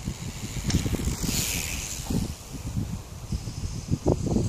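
Wind buffeting the microphone in irregular gusts, with a short hiss about a second and a half in.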